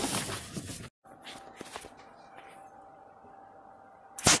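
Rustling handling noise of a hand-held phone and paper for about a second, cutting off abruptly; then quiet room tone with a faint steady hum and a few faint clicks.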